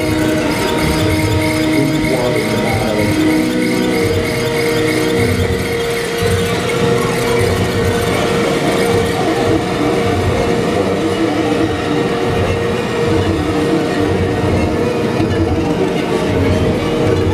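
Live experimental noise music played loud through a PA: a dense wash of noise with several held, squealing tones layered over it. About four seconds in, one steady tone settles in and holds.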